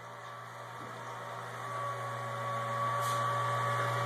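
Small electric brewing pump switched on to recirculate hot wort through a plate chiller: a steady motor hum that grows louder, with a steady whine joining about a second and a half in.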